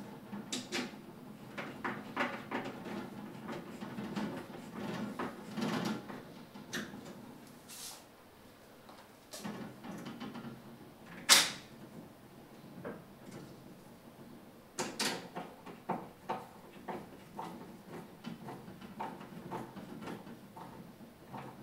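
Phillips screwdriver driving screws into a glass terrarium's frame by hand: scattered small clicks, ticks and scrapes of the screws and tool, with one sharp click about eleven seconds in.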